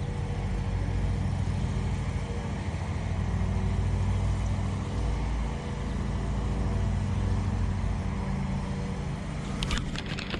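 Steady low rumble and hum of a boat motor, with a quick run of sharp clicks near the end.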